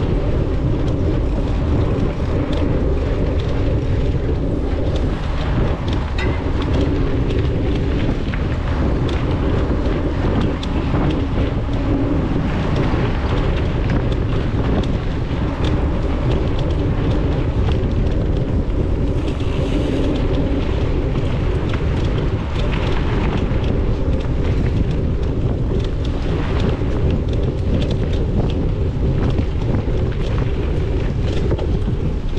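Mountain bike riding fast on a dirt forest trail: steady wind rumble on the bike-mounted camera's microphone, with tyre noise and frequent small rattles and clicks from the bike over the bumps.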